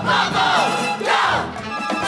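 A group of stage performers shouting and whooping together over the show's music, their voices swooping up and down in pitch.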